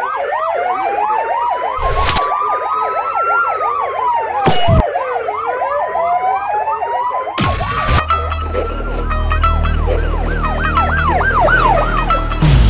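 Overlapping emergency sirens, a fast yelp warbling up and down over a slow wail that rises and falls, cut by sharp hits every two to three seconds. About eight seconds in, a deep bass drone and a ticking pattern join under the sirens.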